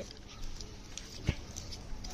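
Faint scraping and clicking of small handheld pencil sharpeners as pencils are twisted in them, with scattered light ticks and one sharper click a little past halfway.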